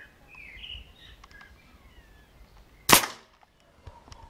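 Air rifle firing a single pellet about three seconds in: one sharp crack with a brief ring after it.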